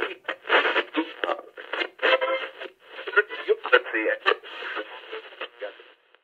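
A person's voice talking steadily, thin and narrow-sounding as if heard through a radio or telephone speaker.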